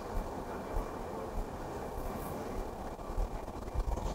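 Low, steady rumble of room background noise with a few soft low knocks.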